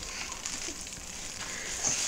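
Faint rustling and crinkling of a paper mailer envelope and plastic packaging being handled and pulled open.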